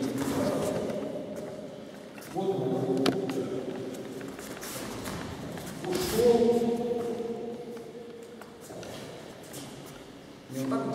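A man talking in a large, echoing gym hall, in several stretches of speech, with one brief knock about three seconds in.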